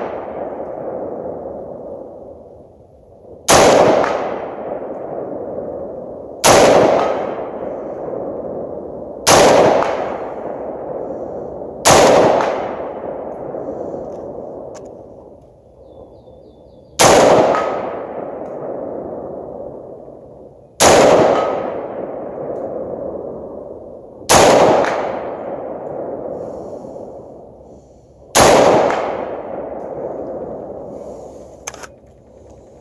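Scoped rifle firing eight single shots, one every three to five seconds, each report followed by a long echo rolling away.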